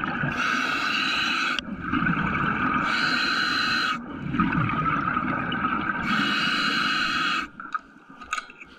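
A diver breathing underwater: three long hissing breaths about three seconds apart, with bubbling, gurgling water between them.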